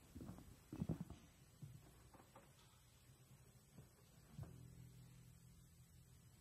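Very quiet, sparse opening notes of a jazz trio piece on piano and double bass: a few soft single notes spaced about a second apart, then a low note held from about four and a half seconds in.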